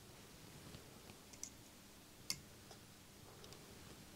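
Faint clicks of a slit lamp being adjusted, its magnification drum turned from one setting to the next, over near-silent room tone. There are a few scattered clicks, the loudest a little past halfway through.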